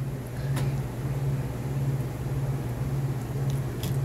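A steady low background hum, with a faint click about half a second in.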